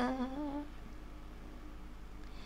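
A man's sung note trails off in the first half second, followed by a pause with only a faint, low steady hum before the next line.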